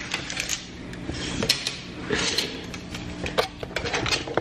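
A tape measure being pulled out and handled, giving a run of scattered sharp metallic clicks and rattles.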